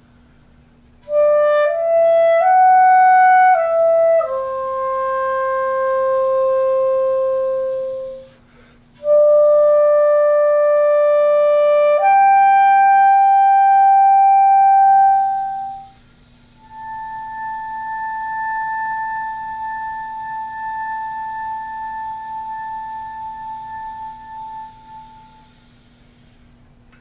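Solo clarinet playing a slow, soft closing phrase. It opens with a few quick rising and falling notes, moves through held notes, and ends on a long high B held for about nine seconds. The last note is much softer than the rest and dies away in a pianissimo diminuendo.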